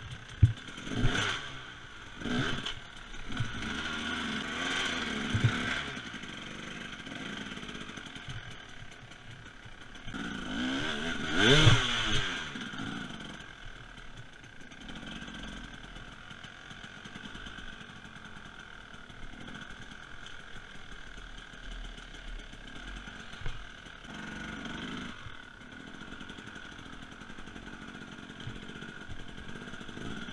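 Husaberg TE300 two-stroke single-cylinder enduro bike being ridden, its engine revving up and down in repeated bursts, with the loudest rev about twelve seconds in. Sharp knocks and clatter from the bike come near the start.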